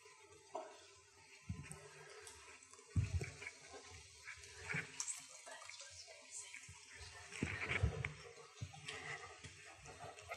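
Faint, scattered rustling and soft knocks of a person moving about in a quiet room, with a louder low thump about three seconds in and another cluster around eight seconds.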